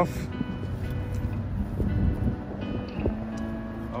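Background music with sustained notes, over the low rumble of a four-wheel drive moving slowly on a dirt track.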